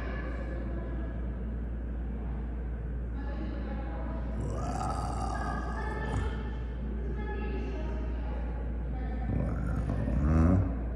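Room ambience: a steady low hum under faint, indistinct voices.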